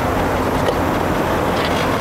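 Steady low rumble with a hiss over it, the sound of vehicle traffic or engines running nearby, with no sharp events standing out.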